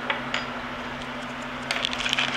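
Small parts and a plastic kit packet being handled on a wooden workbench: a couple of light taps early, then a cluster of small clicks and rustles near the end, over a steady low hum.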